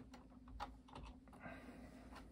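Faint, irregular taps on a computer keyboard, about half a dozen, over a low steady hum.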